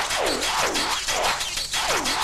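Hardtek electronic dance track: a repeating synth sound that sweeps down and back up in pitch about two and a half times a second, over a dense hissy texture.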